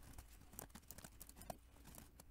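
Faint computer keyboard typing: an irregular run of soft key clicks.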